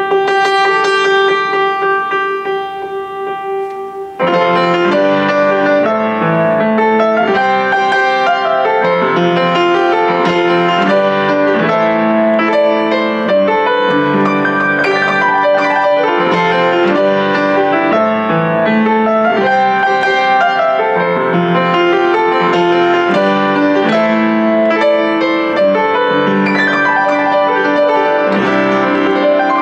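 Steinmayer upright acoustic piano being played. One held note rings and fades, then about four seconds in it breaks into continuous chords and melody.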